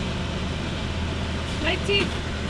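Car engine idling steadily, heard from inside the cabin with the driver's window down. A faint voice comes near the end.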